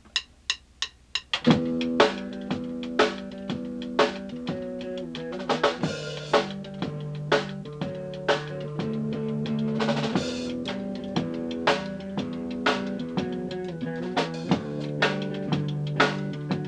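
Live rock band starting a song in a small room: a quick count-in of sharp stick clicks, then drum kit, bass and electric guitar come in together about a second and a half in and play on, with cymbal crashes along the way.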